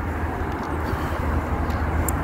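Steady road traffic noise from cars passing on the multi-lane road alongside: a continuous low rumble with a hiss of tyres.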